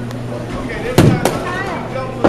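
A sharp crack of a baseball bat hitting a pitched ball about a second in, followed closely by a fainter knock. Voices and a steady low hum carry on underneath.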